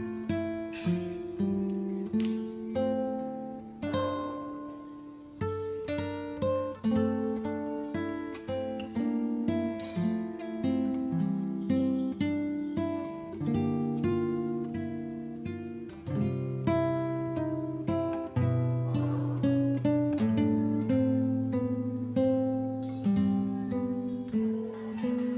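Background music: acoustic guitar playing a steady run of plucked notes and chords, each note ringing and fading.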